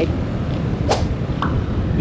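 Wind rushing over the camera microphone on a moving scooter, a steady rough roar. A sharp click about a second in and a softer one soon after.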